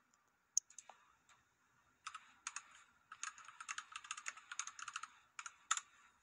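Computer keyboard being typed on: a few scattered clicks, then from about two seconds in a dense run of quick keystrokes lasting nearly four seconds.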